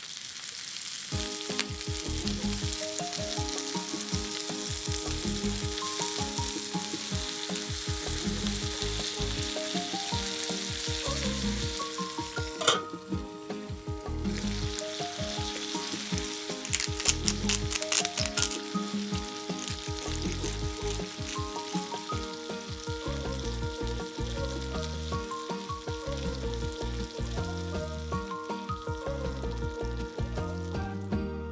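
Raw shrimp sizzling in garlic oil in a frying pan, a steady hiss that briefly drops out about halfway through, with a cluster of sharp spattering crackles soon after. Background music plays underneath.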